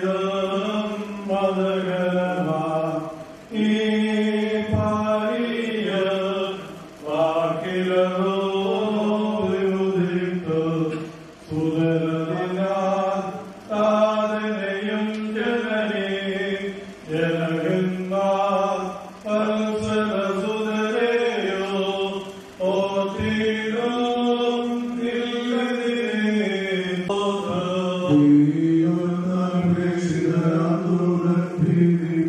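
Voices chanting a slow Christian funeral liturgy hymn, sung in long held phrases with a brief pause for breath every few seconds.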